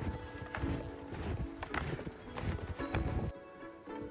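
Background music with held tones over footsteps crunching through snow at a steady walking pace, a step a little more than every half second. The steps stop near the end.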